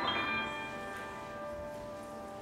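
Grand piano: a high chord struck at the start and left to ring, fading away slowly.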